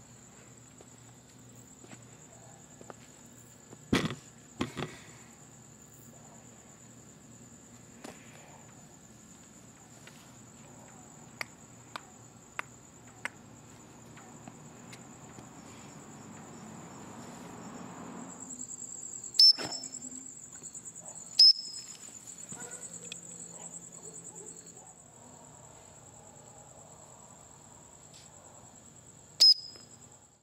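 Crickets chirping in a steady high trill. A couple of knocks come about four seconds in and a few small clicks follow, then three loud sharp snaps: two in the second half and one just before the end.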